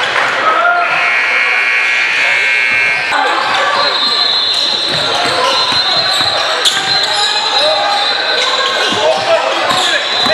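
A basketball being dribbled on a hardwood gym floor, with repeated bounces, amid spectators' voices echoing in the hall. High squeaks from sneakers on the court come and go.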